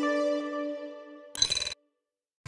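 Title-card jingle music: a held chord fades out, then a short, bright chime-like sting about one and a half seconds in that cuts off abruptly into silence.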